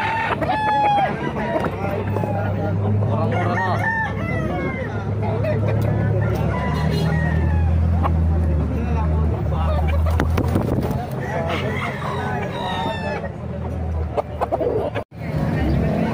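Roosters crowing and chickens clucking, many short calls overlapping, with voices and a low steady hum underneath. The sound breaks off sharply about a second before the end.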